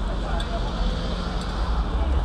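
Busy street ambience on a crowded sidewalk: passers-by talking in the background over a steady low rumble of traffic.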